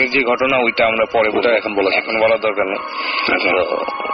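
A person speaking Bengali over a radio broadcast.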